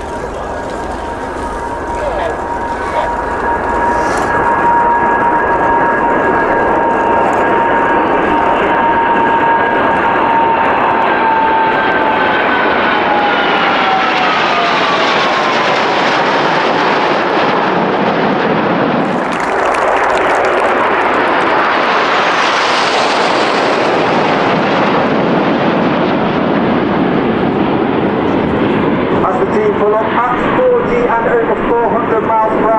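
Jet formation flypast: an RAF Airbus A330 Voyager with nine BAE Hawk T1 jets, a loud engine roar with a steady whine that drops in pitch as the formation passes overhead.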